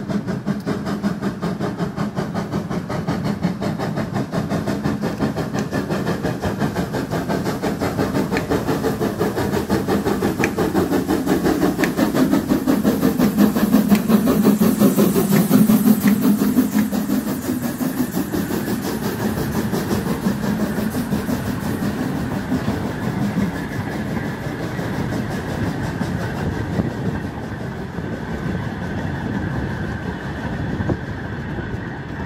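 Narrow-gauge steam locomotive running toward and past at close range, its exhaust beat rapid and steady. The sound is loudest as the engine passes around the middle, with a brief high hiss. Its coaches then roll by on the rails.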